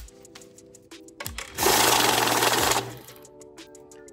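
Electronic bill counter running a stack of 26 twenty-dollar bills through its feed: a loud rush with a steady motor hum, starting about a second and a half in, lasting just over a second and stopping sharply.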